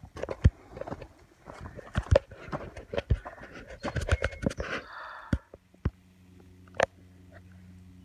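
Footsteps of a hiker walking a stick- and rock-strewn woodland trail: irregular sharp clicks and crunches for about five seconds, with a short breathy rustle near the middle. Then the steps stop, leaving a low steady hum and one more click.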